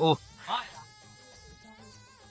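A short spoken "oh", then a brief higher-pitched vocal sound about half a second later. After that, faint background music of sustained tones with a small melodic figure near the end.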